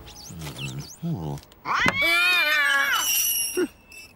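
A man's low mumbling, then a loud, wavering cat yowl lasting about a second, ending in a brief high squeal.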